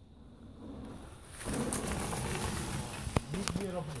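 Mountain bike tyres rolling over a dirt, leaf-strewn forest trail as riders come close, a steady noise that rises suddenly about a second and a half in, with two sharp clicks near the end.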